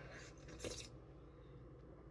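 A faint, brief sip of coffee from a mug about half a second in, otherwise near silence with a low room hum.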